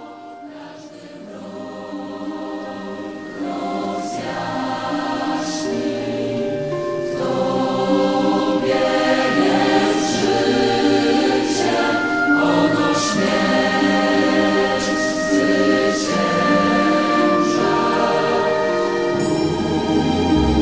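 A choir singing in slow, held notes, swelling in loudness over the first several seconds.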